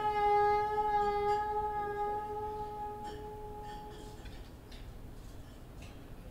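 Soprano saxophone holding one long, steady note that fades away and stops about four seconds in. Faint room noise with a few small clicks is left after it.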